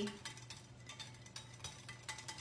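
Wire whisk stirring in a glass bowl, a faint run of quick irregular clicks as the wires tap the sides.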